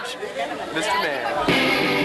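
Voices chattering over a crowded club, then about one and a half seconds in a live ska band comes in suddenly with electric guitar and drums.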